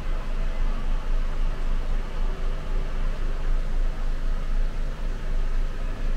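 Inside a city bus standing at a junction: a steady low rumble and hum from the stationary bus, with a faint wash of noise above it.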